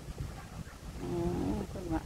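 A woman speaks briefly in Thai over a steady low rumble of wind on the microphone.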